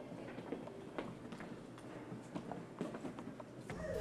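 Faint room sound with light, irregular footsteps and small knocks.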